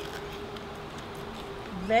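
Crunching of a fresh, firm Aji Pineapple chilli pod being chewed, faint clicks at first, under a faint steady high hum.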